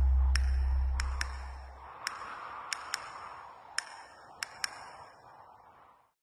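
The tail of a commercial's soundtrack: a deep sustained bass note dies away over the first two seconds. Sparse short pinging clicks, mostly in pairs, sound over a fading hiss until the audio falls nearly silent at the end.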